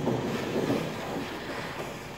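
Wind buffeting a camera microphone in a skiing video, a steady rumbling rush, heard as it plays back through the room's loudspeakers.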